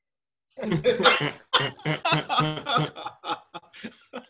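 A person laughing hard: a run of short, pitched 'ha' pulses starting about half a second in, trailing off near the end into shorter, breathier bursts.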